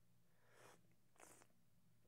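Near silence, with two faint, brief airy slurps of a person sipping hot coffee from a cup, about half a second and a second and a quarter in.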